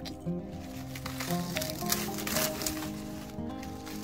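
Background music with sustained, steady tones and a slowly shifting bass line, joined in the middle by a few short crackles of rustling dry leaf litter and pine needles.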